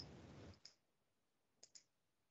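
Faint computer mouse clicks: one at the start with a brief soft hiss after it, another about two-thirds of a second in, and a quick pair about a second and a half in.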